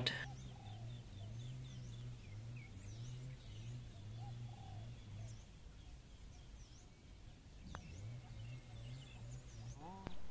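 Birds calling and chirping over a faint low hum, with a single short tap of a putter striking a golf ball about three-quarters of the way through.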